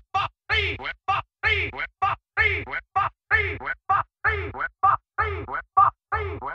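Opening of an electro house and breakbeat track: a short, chopped vocal sample repeated in hard-cut stutters about twice a second, with silence between the bursts.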